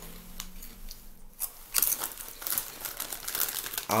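Rustling, crinkling handling noise: a scatter of short crackles, loudest about two seconds in.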